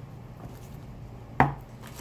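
A single sharp knock on the tabletop about one and a half seconds in, from a tarot deck being handled, over quiet room tone.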